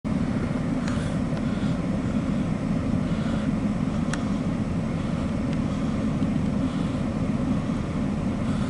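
Steady low engine rumble heard from inside a vehicle's cab, with a few faint clicks.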